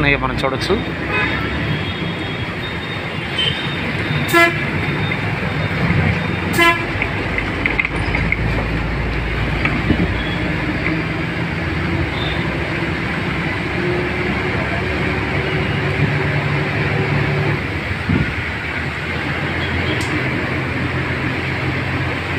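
Road and engine noise from inside a moving vehicle, with short horn toots about four and about six and a half seconds in.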